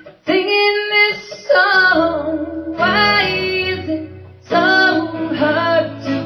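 A woman singing live, accompanying herself on a strummed acoustic guitar, with long held sung notes in several phrases.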